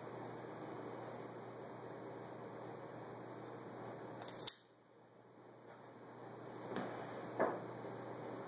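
A Xikar XI3 double-blade cigar cutter snaps shut once, a sharp click about halfway through as it cuts the cigar's cap, over a faint steady room hum. A couple of softer rustles follow near the end.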